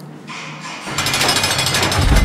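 A loud, harsh, rapid rattling noise that starts abruptly about a second in, after a faint low hum.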